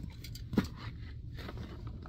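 A cardboard shipping box being handled and lifted, with a sharp click about half a second in and a few lighter knocks after it.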